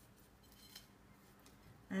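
Faint crackling rustle of fingers pressing a dry spice rub of cumin, coriander, turmeric and paprika into raw lamb chops, with a light tick a little under a second in.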